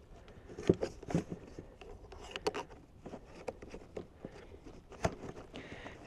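Scattered light clicks and knocks of a metal detector's telescoping shaft and its plastic lock being handled and adjusted, with a sharper knock near the end.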